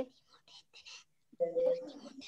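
Faint whispering for the first second or so, then a voice speaking a word or two.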